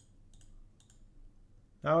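Faint computer mouse clicks, a few scattered ones in the first second, followed by a man starting to speak near the end.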